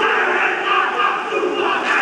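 Maori All Blacks rugby team performing a haka: many men chanting and shouting together, loud and forceful, swelling up sharply at the start.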